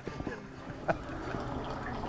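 Maple sap poured from a plastic bucket into a steaming evaporator pan, splashing steadily into the boiling sap. There is a sharp knock just under a second in.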